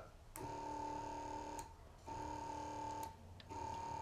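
An old electric bilge pump running dry, its small motor humming steadily in three bursts of about a second each as its lead is touched on and off the battery terminal, with a click at each contact. This is the pump that sticks, here still turning over.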